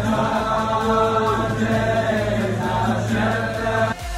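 A group of men singing a slow melody together in chorus, many voices at once.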